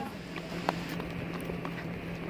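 Footsteps on a brick pavement: a run of sharp, irregular steps from several walkers, under a steady low hum.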